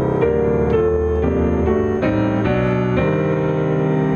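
Grand piano played by hand: a run of chords, each struck and left to ring, a new chord roughly every half second.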